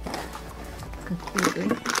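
Crinkling of a foil packaging pouch being handled and pulled open, a steady papery rustle.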